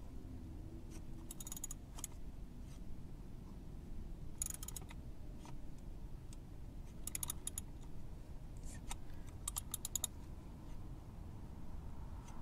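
A socket ratchet clicking in four short runs of quick clicks, a few seconds apart, as it swings back and forth on a cup-type wrench to tighten a motorcycle oil filter.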